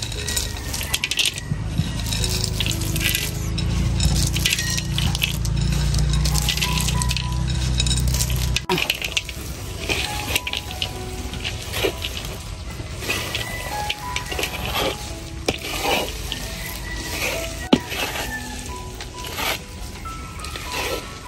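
Roasted peanuts pattering into a steel wok of thick banana jam, then a spatula scraping and stirring the sticky mixture against the wok in short, repeated strokes from about nine seconds in, over background music.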